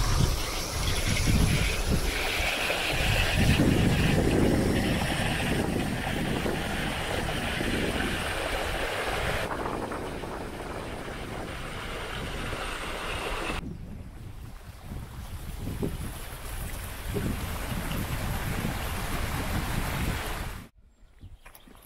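Wind gusting across the camera microphone: an uneven rushing rumble that rises and falls. It changes abruptly twice around the middle and drops quieter for a couple of seconds before picking up again.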